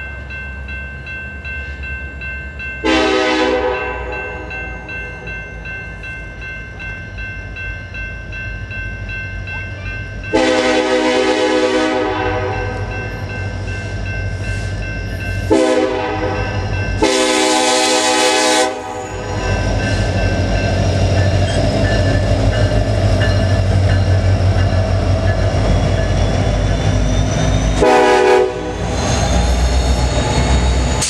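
The air horn on Union Pacific SD70ACe locomotive 1989, a K5LA, sounding for a grade crossing in five blasts: short, long, short, long, then another short near the end. A crossing bell rings steadily underneath. From about two-thirds of the way in, the locomotives' diesel engines and wheels on the rails grow loud as the lead units pass close by.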